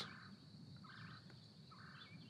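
Near silence: quiet room tone with three faint, short bird calls about a second apart.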